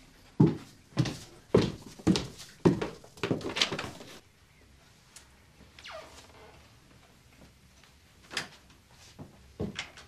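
Footsteps climbing stairs: about seven loud, evenly paced steps roughly half a second apart. They are followed a couple of seconds later by a short falling creak and then a few lighter knocks near the end.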